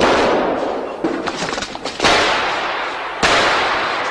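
Three pistol shots from a film soundtrack: one at the start, one about two seconds in and one just past three seconds, each trailing off in a long echo.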